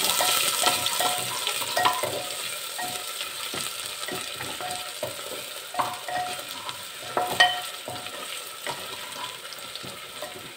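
Ginger-garlic paste sizzling in hot ghee and oil in a pressure cooker, the sizzle slowly dying down, while a wooden spatula stirs it with irregular scrapes and knocks against the pot; one knock about seven seconds in stands out.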